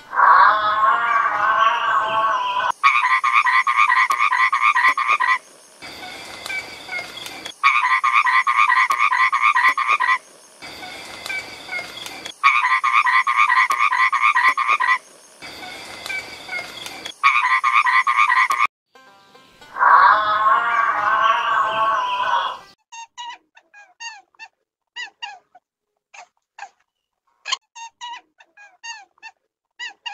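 Toad calling: long, loud croaking trills of about two to three seconds each, repeated several times with softer calls between them. Near the end the croaking stops, followed by a run of short high chirps.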